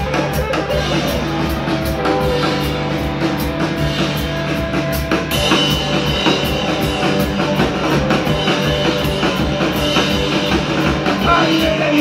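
Live rock band playing: guitar over a steady drum-kit beat, the kick drum landing about two to three times a second. About five seconds in, the top end turns brighter and fuller.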